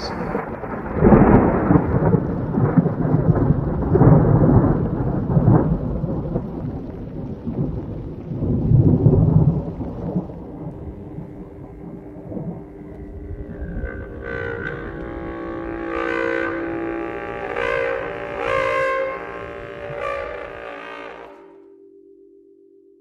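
Low rolling rumbles like thunder, swelling and fading several times over about ten seconds. A held low drone then takes over, with chiming notes above it from about two-thirds of the way in, and everything fades out near the end.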